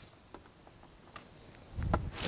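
Steady high-pitched chirring of insects in the surrounding trees, with a few faint ticks. Near the end a low rumble of wind buffets the microphone.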